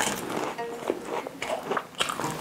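Close-miked biting and chewing of French macarons: the crisp shells crack and crunch in quick, irregular crackles between soft chewing.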